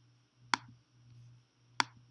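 Two sharp computer mouse clicks, about a second and a half apart, over a faint low hum.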